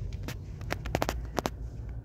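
Low steady rumble inside a Ford Maverick Hybrid's cabin in slow traffic, with about nine light clicks and taps scattered irregularly through the middle.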